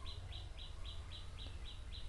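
A small bird chirping faintly and repeatedly, short high chirps about four a second, over a low steady background rumble.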